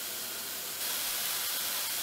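Diced onion sizzling gently in hot oil in a stainless steel pan as it softens, a steady hiss that grows slightly louder and brighter about a second in.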